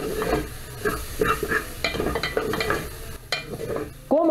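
Wooden spoon stirring and scraping chicken gizzards as they sizzle in an open aluminium pressure cooker, with irregular knocks and scrapes against the pan. Little fat is left, and the meat has begun to stick and brown on the bottom of the pan.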